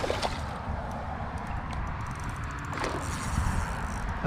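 A hooked carp splashing at the water's surface at the very start, then steady low background noise with a few faint ticks while the fish is played on the line.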